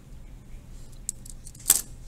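Handling noise from the desk: a few light clicks, then one short, sharp clatter near the end, as of a small hard object such as a marker being handled or set down.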